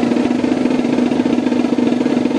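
Marching band brass holding one long, loud, steady note over a rapid snare drum roll.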